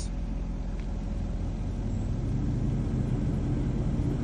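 A vehicle engine running steadily nearby, a low hum that grows a little louder about halfway through.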